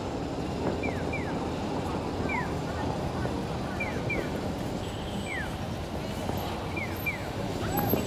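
City street ambience: a steady murmur of crowd voices and traffic, with short high chirps falling in pitch, often in pairs, every second or so.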